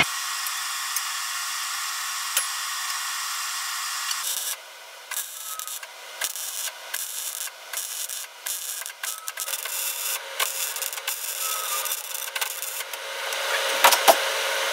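MIG welding arc on steel tubing: a steady hiss for about the first four seconds, then irregular crackling spurts broken by short gaps as welds are laid on the frame.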